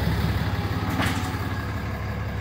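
Ram 3500's Cummins turbo-diesel engine idling, a steady low rumble.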